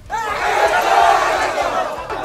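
A crowd of protesters shouting together, many voices at once, starting suddenly and loudest about a second in.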